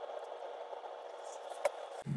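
Quiet, steady background hiss with one light click about one and a half seconds in, typical of small parts being handled on a workbench.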